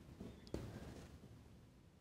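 Near silence: room tone, with a couple of faint, brief soft noises early on.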